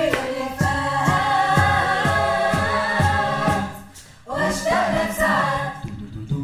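Mixed a cappella choir singing sustained chords over a beatboxed beat of low thumps about two a second. The sound drops away briefly about two-thirds of the way through, then the voices come back in.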